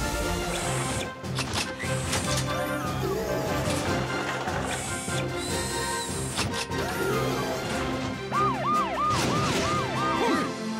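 Cartoon dispatch-sequence music with sound effects: clanks and whooshes in the first couple of seconds, and near the end a fast siren-like warble of short repeated rising-and-falling glides, about three or four a second.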